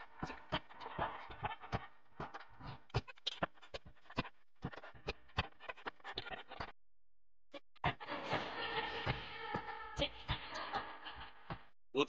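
A group of people laughing and giggling in short, breathy, irregular bursts, fairly quiet, with a brief silence about seven seconds in.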